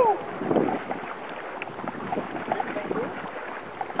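Steady rush of whitewater around a canoe just below a Class III rapid, with wind on the microphone.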